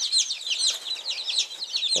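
A brooder full of day-old chicks peeping: many short, high, downward-sliding peeps overlapping in a continuous chorus.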